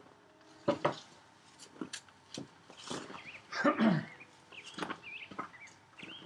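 Scattered knocks and light clatters of a wooden board and hand tools being handled on sawhorses, busiest just before the four-second mark. A few short bird chirps sound in the background.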